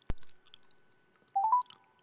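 A sharp click, then about a second and a half in, three quick beeps stepping up in pitch: a phone call being placed.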